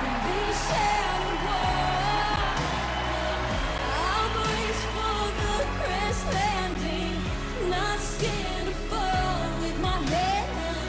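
A woman singing a pop ballad live into a microphone, with a band backing track and a steady beat; her sung lines glide and waver through long held notes.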